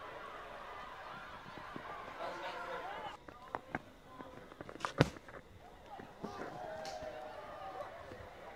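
Open-air cricket ground with faint shouts and calls from players. A few light clicks come just after three seconds in, then one sharp crack about five seconds in, the cricket bat striking the ball.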